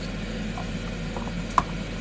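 Steady room hum and hiss, with a single light click about one and a half seconds in as a carrot drops into the clear plastic food chute of a mandolin vegetable slicer.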